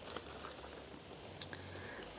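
Cabbage leaves being pushed back by hand: faint rustling, with a few short, high squeaks about a second in.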